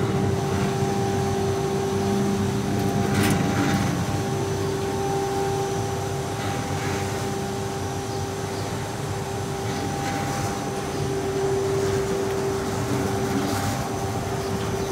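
Automatic flatbed rug dusting machine running, a steady motor and vacuum hum with a held tone. A few short metallic clicks near the start come from its cabinet's key lock and doors being worked.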